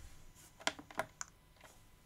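A handful of short plastic clicks from a Jumper T12 radio transmitter's buttons and case being pressed and handled as it is switched off.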